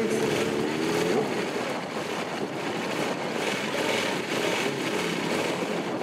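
KTM superstock racing motorcycle's V-twin engine running at the start line, its revs rising and falling in the first second, then running more evenly.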